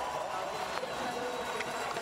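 Slalom-course ambience: a steady wash of distant crowd and background noise, with faint scrapes of a skier's edges carving on hard-packed snow, about twice.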